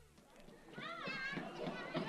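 A group of children talking and calling out, starting about two-thirds of a second in, with one high voice sliding up and down.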